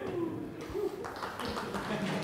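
Faint voices and a low murmur from the audience in a lecture hall, reacting during a pause in the talk.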